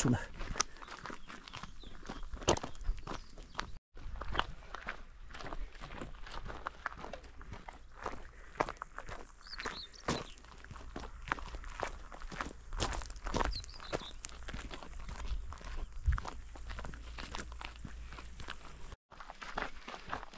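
Walking footsteps crunching on a gravel track, a quick uneven patter of steps over a steady low rumble. The sound cuts out for an instant twice, about four seconds in and near the end.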